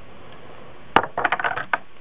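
Sunglasses being handled and clattered against a hard surface: one sharp click about a second in, then a quick run of lighter clicks.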